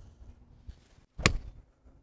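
A golf wedge striking the ball on a full shot from the fairway: one sharp, crisp click just over a second in.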